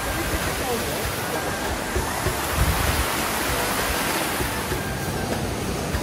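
Small waterfall splashing down over rocks: a steady rush of water.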